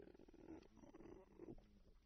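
Near silence: faint room tone with a low, faint murmur.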